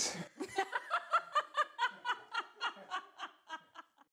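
A person laughing: a long run of quick, even chuckles that slow and fade toward the end.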